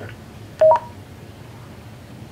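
A short two-note electronic beep, a lower tone stepping up to a higher one, from a Motorola XPR 4550 DMR mobile radio about half a second in, over a faint steady hum.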